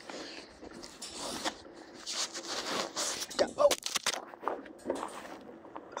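A young calf mouthing and chewing on a smartphone right against its microphone: irregular rubbing, scraping and crunching, with a few sharp clicks from its teeth on the phone, which cracks the phone's protective screen glass.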